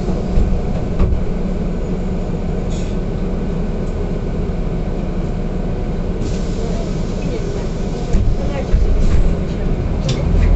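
Interior noise of an Otokar Kent C city bus under way, heard from inside the passenger cabin: steady engine and road rumble with occasional knocks and rattles from the body, the low rumble growing louder near the end.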